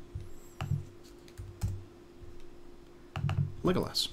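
Several separate computer keyboard key presses, each a short click, some with a soft low thump, as a command is re-run in a terminal. A faint steady hum sits underneath.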